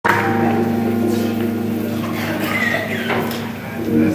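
Live band keyboard holding a sustained chord that fades out near the end, with voices in the room over it.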